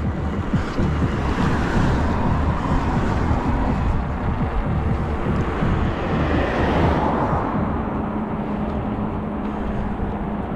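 Steady rush of wind on the microphone and tyre noise from a bicycle riding along an asphalt road, with a car passing that swells and fades in the middle.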